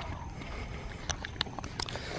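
A few faint, scattered taps of footsteps and handheld-camera handling over a low, steady outdoor rumble.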